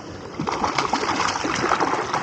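Water splashing as a large brown trout thrashes at the surface while being scooped into a landing net in a shallow stream. The splashing starts about half a second in and keeps up in quick, irregular bursts.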